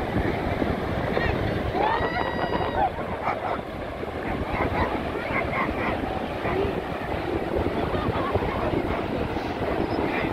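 Wind buffeting the microphone over the steady wash of ocean surf, with faint voices in the distance. About two seconds in comes one brief high call whose pitch rises and falls.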